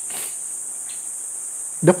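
Steady high-pitched hiss that runs unbroken through a pause in a man's speech, with his voice coming back near the end.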